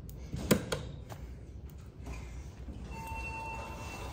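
Northern traction elevator: the hall call button is pressed with a sharp click about half a second in, and near the end the car arrives with a steady electronic arrival chime that lasts about a second.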